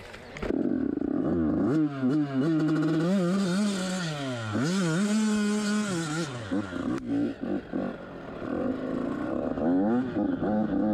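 Yamaha YZ85 two-stroke dirt bike engine starting about half a second in and being revved up and down in several blips, held high for a moment, then dropping to a rougher, lower run before rising again near the end, as the downed bike is picked up and ridden off. A sharp knock sounds about seven seconds in.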